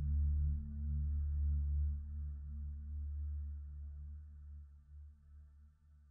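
Dark space ambient music: a deep low drone with faint steady tones above it, fading out.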